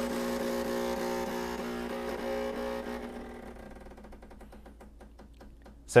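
Decent DE1 espresso machine's pump running with a steady hum during the start of a shot, fading after about three seconds into a quieter rapid pulsing. The coffee is ground too fine, so the pump is pushing against a nearly choked puck in its pre-infusion step.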